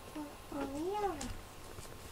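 Domestic cat giving a soft short chirp, then one quiet meow that rises and falls in pitch.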